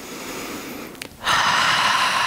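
A woman's deep yogic breathing: a slow, quiet in-breath that gradually swells, then a loud, long out-breath starting just past the middle.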